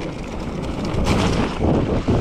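Wind rushing over the camera microphone together with the tyre rumble and rattle of a mountain bike descending a dirt trail at speed.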